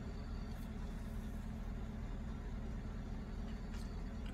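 Low, steady hum of a car idling, heard from inside the cabin.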